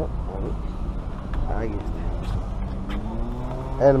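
Street traffic: a steady low rumble with a motor vehicle's engine rising in pitch about three seconds in, then holding a steady hum. Faint voices of passers-by.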